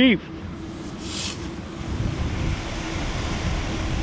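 Shallow water moving around a wader digging a target, with wind on the microphone and a steady low hum. A short hiss comes about a second in, and the rushing grows louder towards the end.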